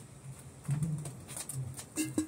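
A few low cooing notes from a bird, in three short pieces in the second half, with faint taps around them.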